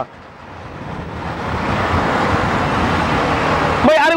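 Street traffic from passing auto-rickshaws: engine rumble and road noise, building from quiet to loud over the first couple of seconds and then holding steady.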